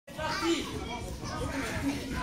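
Several children talking and calling out over one another, with overlapping voices throughout.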